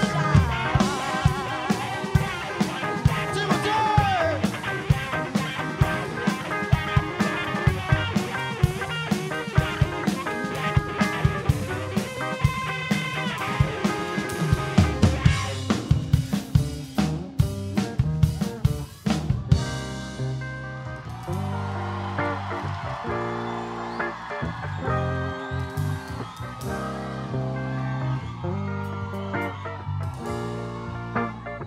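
Live rock band playing an instrumental passage on electric guitars, bass and drum kit. The drums drop out about two-thirds of the way through, leaving held guitar and bass chords.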